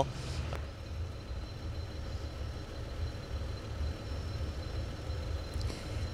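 Steady low outdoor rumble, the ambient sound at a street-side crash scene, with a faint thin high whine above it.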